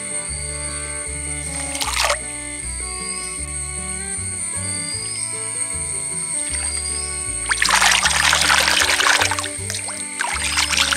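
Background music with a steady bass line throughout, a short swish about two seconds in. From about seven and a half seconds in, a couple of seconds of loud water splashing and sloshing as hands rub and wash shallots in a metal pot of water.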